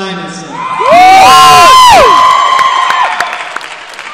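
Audience members close to the microphone screaming and whooping very loudly for a graduate, several voices overlapping for about a second, with one held shout fading out about three seconds in. Crowd cheering and clapping go on underneath.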